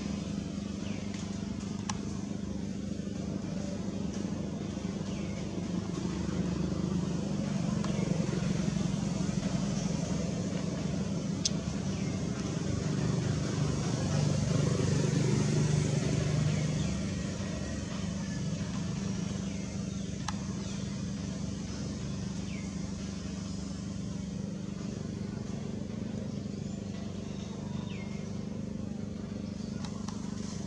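A steady low engine hum that swells for several seconds in the middle and then eases back, with a few faint short chirps now and then.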